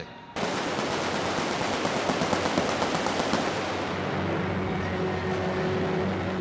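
Snare drums of a drum line playing a fast roll that starts suddenly about half a second in. The roll fades after about three and a half seconds into a steadier sound with a few held low notes.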